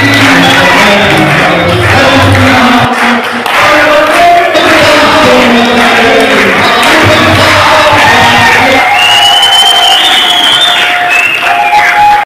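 Music, with a crowd's voices and cheering in the mix.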